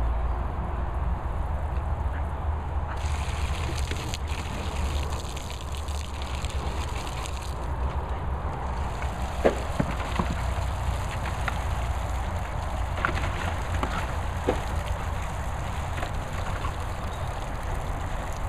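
Water spraying with a steady hiss over a low rumble, with a few faint short clicks.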